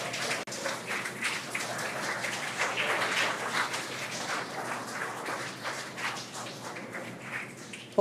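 A crowd applauding, the clapping slowly dying down, in celebration of the confirmed Dragon separation.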